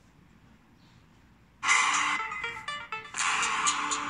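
An electronic dance track played through a Nokia 7 Plus smartphone's built-in loudspeaker, starting suddenly about a second and a half in after near silence. It sounds thin, with little deep bass.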